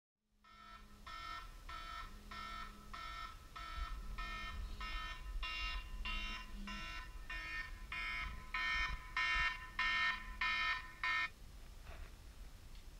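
Smartphone alarm ringing: a repeated electronic beeping tone, about one and a half beeps a second, growing louder toward the end. It cuts off abruptly about eleven seconds in, when the alarm is switched off.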